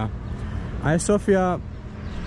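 A man's voice saying a short phrase in the middle, over a steady low outdoor rumble.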